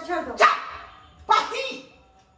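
Two short, sharp dog-like barks about a second apart, each dying away quickly.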